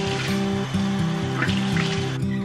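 Acoustic guitar background music over a running bathroom tap, with a couple of splashes as water is brought up to the face.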